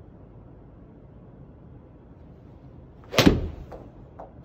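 Seven-iron striking a golf ball off a hitting mat about three seconds in: one loud, sharp strike that dies away quickly, followed by a few fainter knocks as the ball meets the simulator screen and drops. Judged a well-struck shot.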